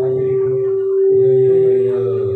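A steady, unwavering pitched tone held through, over a man's low voice that breaks off twice.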